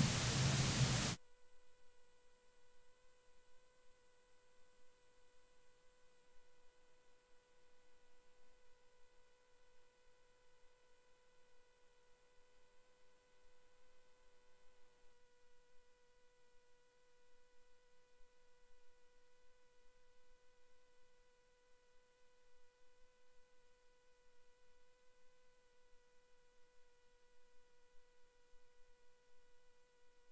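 About a second of room noise from the committee hall, cut off suddenly; then near silence on the feed with a faint, steady electronic tone, a mid-pitched hum with several overtones.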